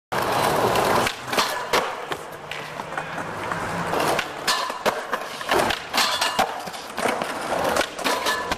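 Skateboard rolling over a tiled plaza, the wheels rumbling and clacking over the tile joints with a string of sharp knocks. Near the end comes a sharp snap as the board's tail is popped for the jump onto the rail.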